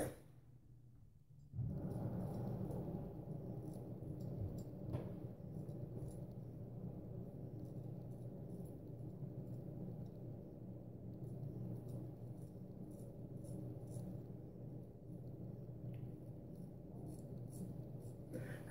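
Faint, short scrapes of a Gold Dollar 66 carbon-steel straight razor cutting stubble on the chin, one a little sharper about five seconds in, over a steady low hum. The first second and a half is silent.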